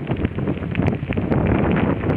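Wind buffeting the microphone of a camera riding on a moving bicycle, with many small clicks and rattles from the bike rolling over a gravel path.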